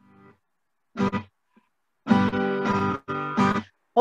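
Acoustic guitar strumming an introduction: a short strum about a second in, then two longer held chords in the second half.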